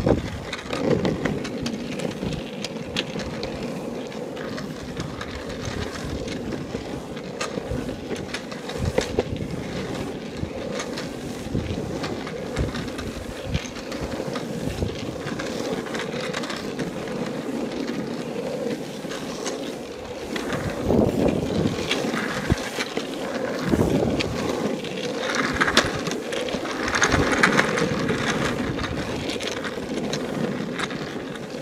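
Longboard wheels rolling on rough, cracked asphalt: a continuous rumble with frequent small clicks, and wind on the microphone. The noise grows louder and rougher in stretches during the last third.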